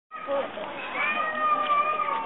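People talking, with one long high-pitched voice held for about a second in the second half.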